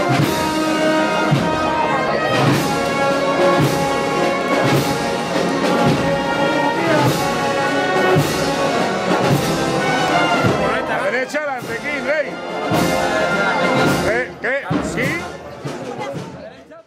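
A processional brass band playing a march with a steady beat, with voices coming through over it in the later part; the music fades out at the end.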